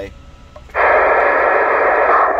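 Cobra 148 GTL CB radio receiving: after a brief lull, about three-quarters of a second in, a loud rush of narrow, tinny static opens up, with a distant station's voice faint under it ("I'm back out").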